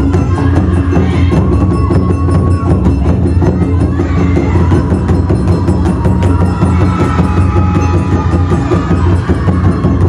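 Live taiko drum ensemble performing: rapid drum strikes over a steady low drum pulse, with a held melodic line above in the second half.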